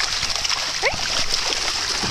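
Shallow seawater splashing and washing over sand, with a dog moving through it.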